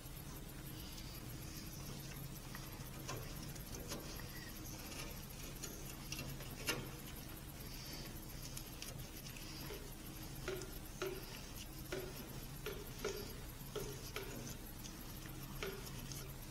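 Faint scattered clicks and light taps of gloved hands handling a capped brake line and its fittings on a truck frame rail, coming more often in the second half, over a steady low hum.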